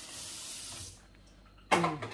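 Kitchen tap running with a steady hiss, shut off abruptly about a second in. A short vocal sound follows near the end.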